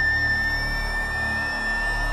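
Dramatic background music: a single high note held steady over a low sustained drone.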